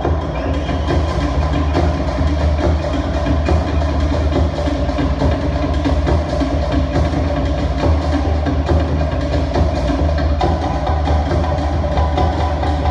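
Fast Polynesian drum music with a strong deep bass, the drum strikes quick and steady.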